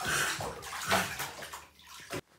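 A toddler splashing water in a bathtub, with two louder splashes, one at the start and one about a second in.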